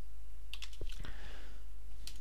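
A few keystrokes on a computer keyboard, short clicks that cluster around half a second and one second in, over a steady low hum.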